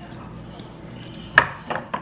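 A sharp crack about two-thirds of the way through, then two lighter clicks. The sounds come from hard-set chocolate on strawberries being pried loose from the metal pan it has stuck to.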